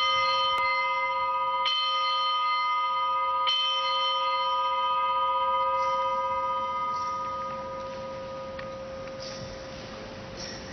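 Altar bell struck three times, about a second and a half to two seconds apart, each stroke ringing on and slowly fading: the consecration bell rung at the elevation of the host.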